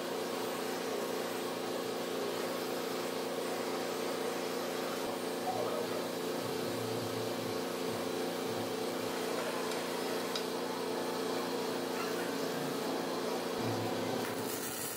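Gas welding torch flame hissing steadily as it preheats a cast aluminium engine housing before welding, over a constant machine hum.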